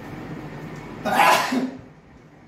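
A man's single loud sneeze about a second in, lasting about half a second.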